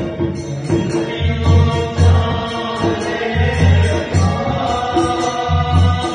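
Chant-like devotional folk singing accompanied by a large hand-played frame drum, its deep low booms recurring roughly every second under the melody.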